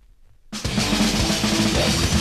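A grindcore band's recorded song opening: faint hiss, then about half a second in the full band crashes in all at once with fast drums and loud guitar.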